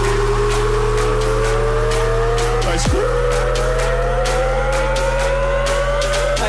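Bass house electronic dance music from a DJ mix. A held low bass sits under a slowly rising synth line that falls away with a quick downward sweep about three seconds in, then starts rising again, with crisp ticks above.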